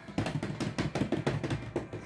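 Quick run of clicks and taps from trading cards in plastic sleeves being flipped through by hand, about eight clicks a second, stopping near the end.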